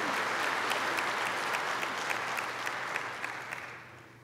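A church congregation applauding, a dense clapping that thins and fades away over the last second or so.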